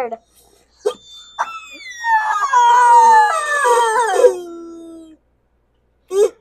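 Sad-trombone 'wah-wah-wah-waah' comedy sound effect: a run of notes falling step by step and ending on a long low note, the stock cue for a joke that falls flat.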